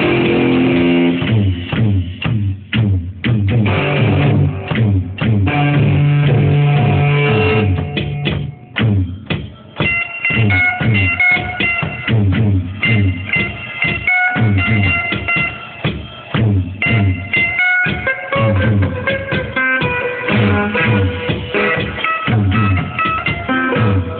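Loud electric guitar played through a Marshall amplifier, in a choppy, rhythmic riff with a beat underneath. The playing breaks off briefly a couple of times in the first ten seconds, then settles into a repeating pattern of notes.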